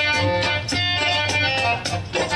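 A harmonium playing a sustained melody over a steady beat of tabla strokes, about three a second.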